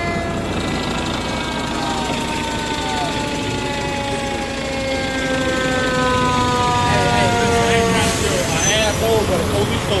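Fire engine siren winding down, its pitch falling slowly over several seconds, with a second fall starting near the end. Voices can be heard faintly in the background.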